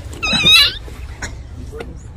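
A person's short, high, wavering cry near the start, lasting about half a second, followed by a few faint clicks over crowd noise.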